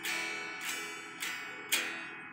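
Electric guitar strings strummed by hand without amplification, four strums about half a second apart, each ringing briefly and fading. The amp stays silent because the looper pedal in the signal chain passes no signal.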